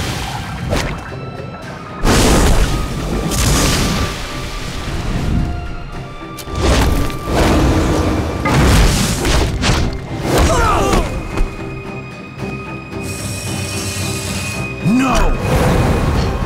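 A dramatic orchestral score under battle sound effects: a string of loud booms and crashing impacts over held music. There are brief vocal efforts about ten seconds in and again near the end.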